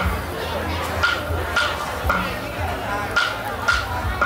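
Music for a Cao Lan ritual lamp dance: chanted singing over paired percussion strikes with a short ringing tone, the pairs half a second apart and repeating about every second and a half.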